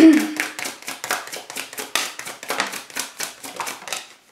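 A tarot deck being shuffled by hand: a quick, uneven run of card slaps and flicks, several a second, that stops just before the end.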